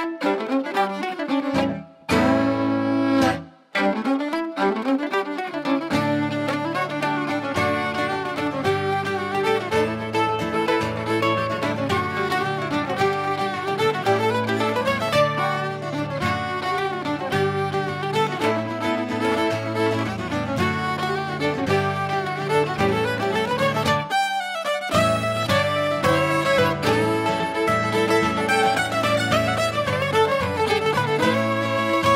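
Live Irish traditional music from a trio: fiddle carrying the melody over acoustic guitar and electric mandolin. It opens with a couple of short pauses, then plays on continuously, with the bass notes coming in a few seconds in.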